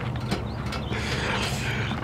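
Widebody Dodge Daytona's engine running low and steady as the car is driven up steel trailer ramps, with scattered mechanical clicks.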